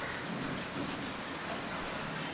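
A steady, even background hiss with no distinct events, in a brief pause between a man's phrases.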